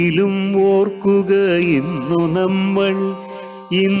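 A Malayalam poem sung slowly in long, wavering notes over a steady drone accompaniment. It drops away briefly about three and a half seconds in.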